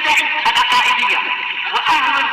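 A continuous voice-like sound with a fast-wavering pitch, as in chanting or melismatic singing, holding a steady loudness with frequent small clicks over it.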